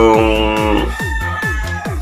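A rooster crowing once: a loud, many-toned opening that thins into a long held high note, over background electronic music with a steady beat of about three thumps a second.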